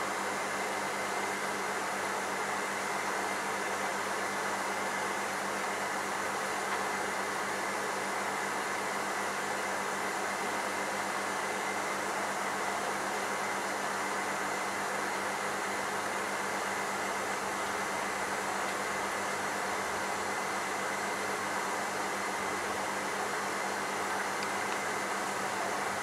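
Aquarium air pump and sponge filter running: a steady rushing hiss of air and bubbles with a low, even hum.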